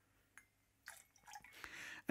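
Faint trickle and drips of lemon juice being poured into a metal jigger and a mixing glass, in near silence, with a light click about a third of a second in.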